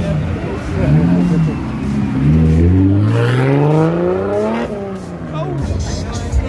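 Car engine revved in two short blips, then one long climbing rev that builds for a couple of seconds and cuts off sharply near the end.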